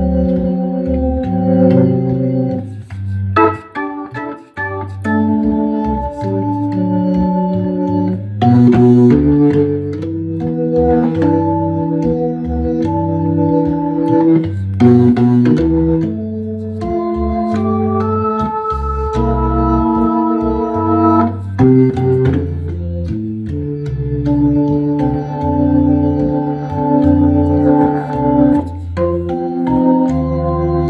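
Hammond B3 tonewheel organ playing solo jazz: held chords over a bass line that changes note every half second or so. There is a short gap about four seconds in, and a few crisp, sharp-edged chord attacks later.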